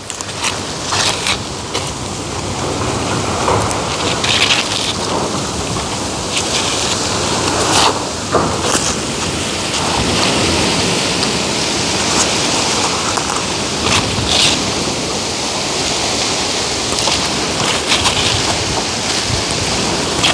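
Chayote vine leaves rustling close by as young leaves and tendrils are picked by hand: a continuous loud rustle with sharper crackles at irregular moments.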